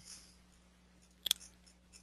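A sharp double click a little past halfway, from the computer as the document is scrolled, over a faint steady hum.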